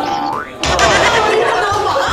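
A short rising boing sound effect over background music, followed about half a second in by a loud burst of several voices shouting.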